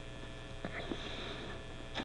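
Steady low mains hum with faint background hiss, broken by two faint clicks about two-thirds of a second and just under a second in.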